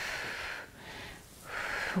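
A woman breathing hard from exertion, a few audible breaths in and out.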